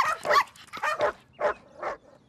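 Dogs barking and yapping: about six short barks in quick succession.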